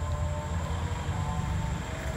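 Wind buffeting an open-air phone microphone, a steady low rumble with faint thin tones above it.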